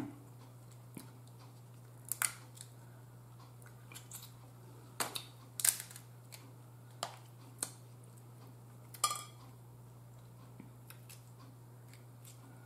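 Crab leg shells being cracked and snapped apart by hand, with the pick of a metal fork clicking against the shell: about eight short, sharp cracks at uneven intervals.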